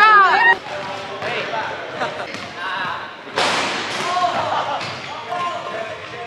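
A basketball bouncing amid people's voices, with a loud voice-like sound right at the start and a sudden hard thud a little over three seconds in.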